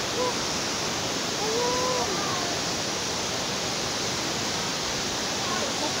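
Steady rushing of a waterfall: an even, unbroken wash of falling-water noise.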